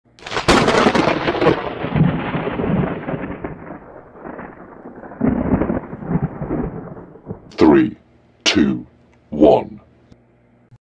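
Intro sound effect of a thunder crash: a sharp crack about half a second in, then a long, dying rumble that swells again around five seconds. Three short, separate sweeping sounds follow near the end.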